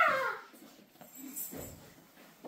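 A short, high-pitched cry that glides down in pitch right at the start, fading within about half a second.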